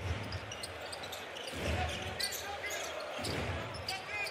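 Live basketball court sound: an arena crowd murmuring, with a ball being dribbled on the hardwood and a few short sneaker squeaks about halfway through.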